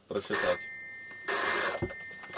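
A bell-like ring sounds twice, about a second apart, each ring starting sharply and fading out.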